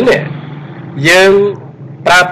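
Speech only: a man's voice holding one drawn-out syllable about a second in, over a steady low hum.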